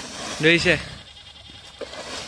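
A man's short shouted exclamation about half a second in, over low outdoor background noise.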